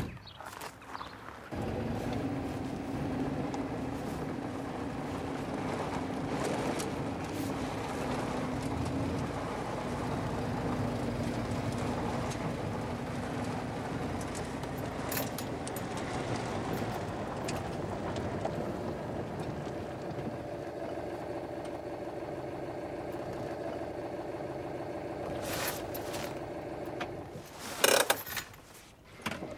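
Car engine running steadily, starting abruptly about a second and a half in, with a few sharp clicks near the end.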